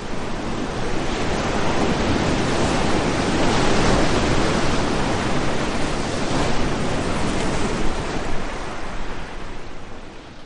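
Ocean surf: a wash of breaking waves that swells to its loudest near the middle and fades toward the end.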